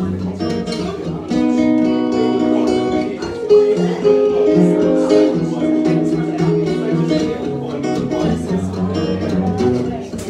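Acoustic guitar played live, a continuous instrumental passage of picked and strummed notes.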